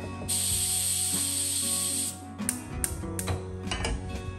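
A loud, even hiss that starts suddenly and cuts off about two seconds in, then a run of sharp clicks and clanks as a pressure cooker is set on a gas burner and handled, over quiet guitar background music.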